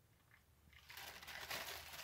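Thin white plastic wrapping being handled and crumpled, crinkling as it is lifted and folded around a tortilla snack. It starts a little under a second in and is loudest soon after.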